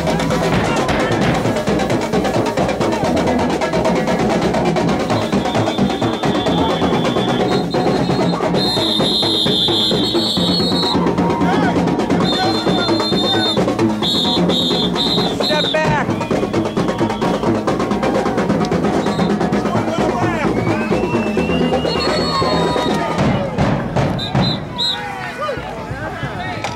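Marching drumline playing bass and snare drums in a fast, steady beat, with long high whistle blasts several times in the middle and again near the end. Crowd voices run underneath.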